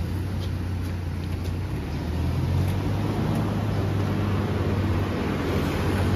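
Car engine idling close by, a steady low hum that grows slightly louder about two seconds in, over light street traffic.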